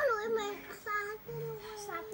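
A young child singing in a high voice: a rising opening note, short sung phrases, then one long held note in the second half.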